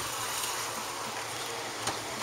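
Steady outdoor background noise: an even hiss with a low rumble underneath and no distinct events.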